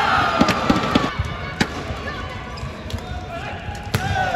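Badminton rally: sharp racket hits on the shuttlecock, with court shoes squeaking on the synthetic court mat between them.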